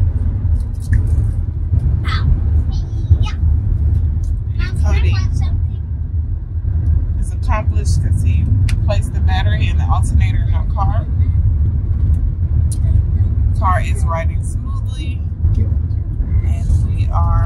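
Steady low road-and-engine rumble inside a moving minivan's cabin, with bits of quiet talking over it.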